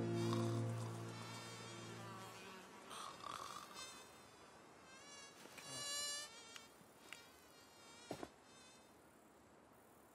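Sustained low music notes fade out in the first couple of seconds. Then a flying insect buzzes close by with a thin whine that wavers up and down in pitch, coming and going several times. A few faint clicks follow near the end.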